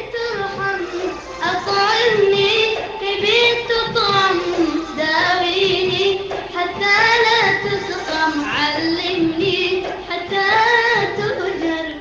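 A boy singing solo into a handheld microphone: a melodic line of held notes that glide up and down, fading out near the end.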